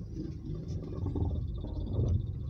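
A small car's engine running at low speed during a parking manoeuvre, heard as a low rumble inside the cabin, getting a little louder about a second in.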